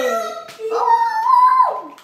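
A high-pitched voice making long drawn-out wavering calls: a note gliding down at the start, then a higher note held for about a second that drops away near the end.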